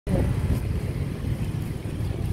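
Wind buffeting the microphone: a low, uneven rumble with no steady pitch.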